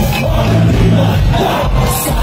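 Live band playing a rock-style song: electric guitars, bass and drums, with two cymbal-like crashes near the start and near the end, over shouting from the crowd.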